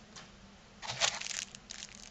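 Clear plastic bag around a remote control crinkling as the remote is handled and lifted out of its box, in a burst of crackles about a second in.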